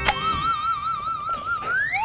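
Electronic theremin-like sound effect: a short click, then a wavering tone that wobbles in pitch about five times a second and glides upward near the end.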